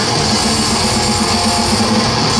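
Death metal band playing live at full volume: distorted electric guitars, bass and drums in a fast, dense riff.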